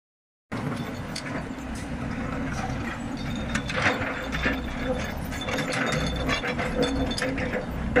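Hyundai crawler excavator working: its diesel engine runs steadily while the bucket scrapes and clanks through broken paving and rubble, with repeated sharp metallic knocks.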